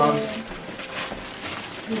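Christmas wrapping paper rustling and crinkling in a few faint scratches as a wrapped gift box is pulled open by hand.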